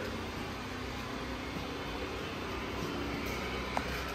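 A steady mechanical hum with one faint click near the end.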